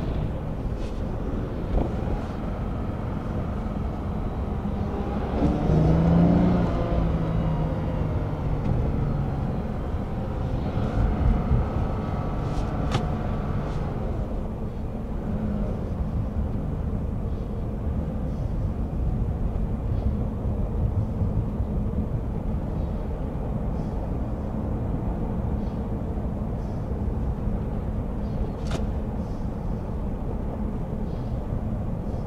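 Road and engine noise inside a moving Toyota Crown's cabin: a steady low rumble, louder for a few seconds about six seconds in and again around eleven to thirteen seconds.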